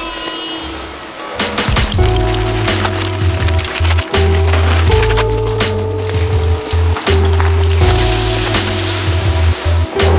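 Background music: a track with held notes and a beat, where a heavy bass line comes in about two seconds in and the music gets louder.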